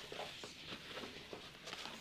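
Faint rustling and a few light taps from a polyester webbing strap being handled and moved across a tabletop.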